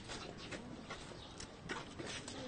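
Quiet outdoor background with faint, irregular clicks and taps, about five of them in two seconds.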